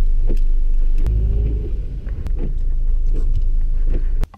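Car running, heard from inside the cabin as it moves off: a steady low rumble, with a few sharp clicks.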